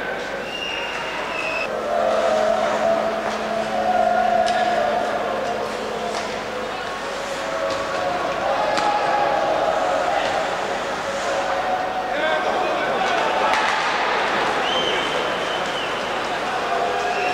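Ice hockey arena sound: crowd voices throughout, with sharp clacks of sticks and puck and brief high-pitched squeals of skate blades on the ice near the start and near the end.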